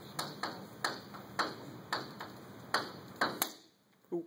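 Chalk on a chalkboard being written with, about ten sharp irregular taps and short scrapes as letters are drawn, stopping about three and a half seconds in.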